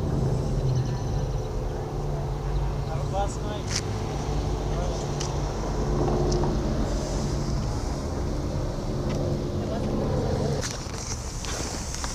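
A motor vehicle's engine running close by at a steady low pitch, a continuous even hum that cuts off about a second before the end.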